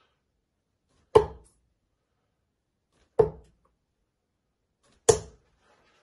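Three steel-tip darts striking a bristle dartboard one after another, each a short sharp thud, about two seconds apart.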